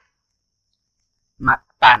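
Near silence for about the first second and a half, then a voice speaking a single word.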